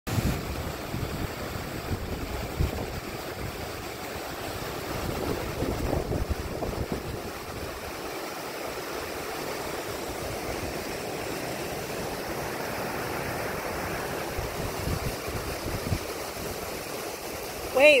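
Waterfall and rocky creek rushing steadily, with low, irregular buffeting on the microphone now and then.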